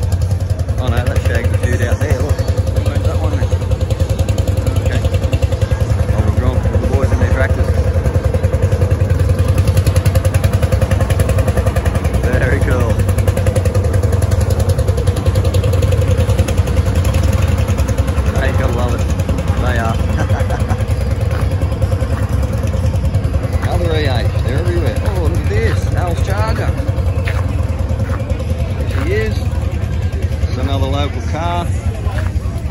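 A steady low engine rumble, like a car idling close by, with people talking now and then in the background.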